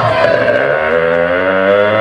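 Rock band playing live through a PA: one held, amplified instrument tone that slowly slides upward in pitch.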